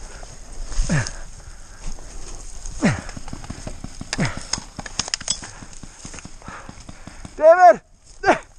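Irregular pops and snaps of paintball fire, with a few short falling whooshes spread through it. A loud, short shout near the end.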